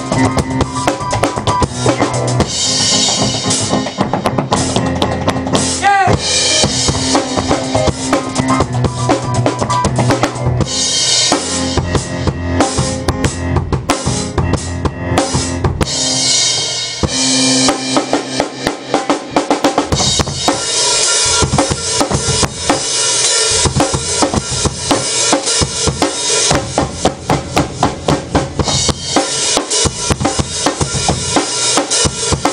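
Live improvised jam of a drum kit and keyboard with tap dancing: fast kick, snare and rim hits over held keyboard notes. Partway through, the held notes drop out at times, leaving mostly quick percussive hits.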